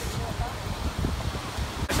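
Wind buffeting a phone's microphone on an open beach, a rough low rush that cuts off abruptly near the end.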